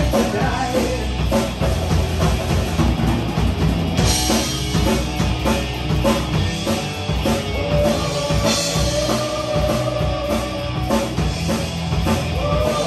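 Live rock band playing electric guitars, bass guitar and drum kit with a steady beat; the cymbals get brighter about four seconds in, and a guitar holds a long note in the second half.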